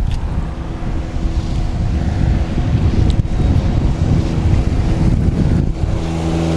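Wind buffeting the microphone in a loud low rumble, with the steady drone of a motor running in the background.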